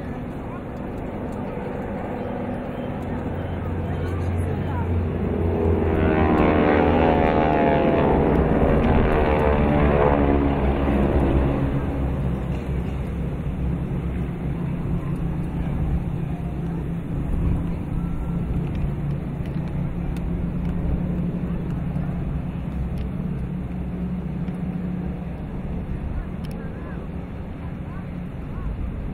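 Formation of propeller-driven aircraft passing overhead. The engine drone builds a few seconds in and is loudest near the middle, its pitch falling as the planes go by. A lower, steadier drone then runs on and slowly fades.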